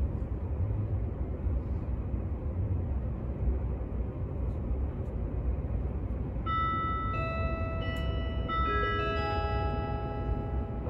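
Low, steady rumble of an Odakyu Romancecar limited express running through a subway tunnel, heard inside the passenger cabin. About two-thirds of the way in, the train's onboard chime plays a short melody of bell-like notes over the public-address system, signalling an upcoming station announcement.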